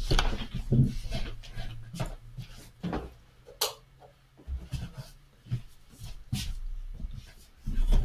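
Scattered knocks, clicks and rustles of a person getting up and moving about a small room to switch on another light, with dull low bumps between.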